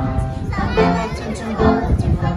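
Choir of young children singing a song in unison with keyboard accompaniment.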